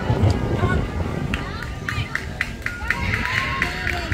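Girls' voices calling out, then a sing-song chant with rhythmic clapping, about four claps a second, through the second half, as in a softball dugout cheer.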